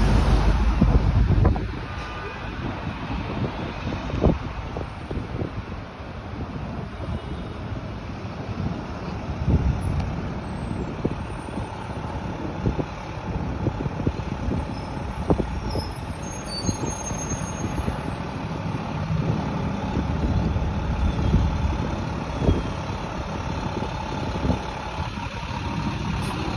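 Road traffic on a busy city avenue: cars, trucks and buses passing with a continuous rumble. Wind buffets the microphone in the first second or so, and a faint high squeal comes near the middle.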